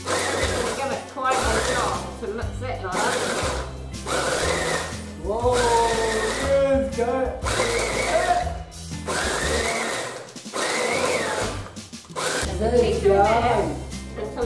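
Electric food processor pulsed on and off in a run of short bursts of about a second each, chopping a thick mix of dates, walnuts and fruit.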